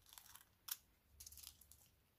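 Faint scissors cutting thin nail-art transfer foil: a sharp snip about two-thirds of a second in, then a brief crinkling of the foil.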